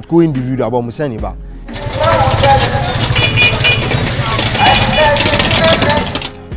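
Busy street noise starting about two seconds in: a motor vehicle engine running among general traffic and crowd bustle.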